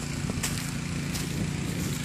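An engine running steadily at a constant speed, a low, even drone.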